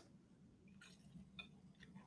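Near silence, with a few faint short ticks about a second in and again near the end.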